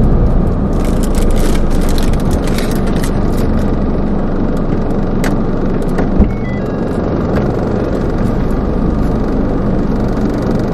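Steady low rumble of a car's engine and road noise heard inside the cabin, with scattered clicks and rustles in the first few seconds and a short thump about six seconds in.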